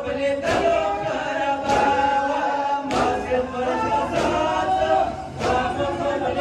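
Men chanting a noha in a mourning rhythm while a crowd beats its chests in unison. The sharp chest slaps land together about once every 1.2 seconds under the chanting.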